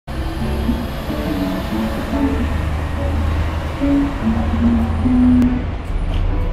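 Busked guitar music from an electric and an acoustic guitar played through a small amp, with single notes over a steady low hum.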